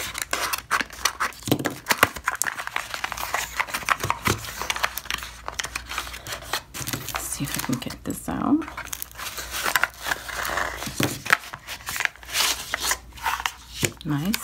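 A cardboard box of stamping polishes is opened by hand and its foam-lined tray of bottles pulled out. The sound is an irregular run of rustling, scraping and crinkling packaging, with many small clicks and knocks.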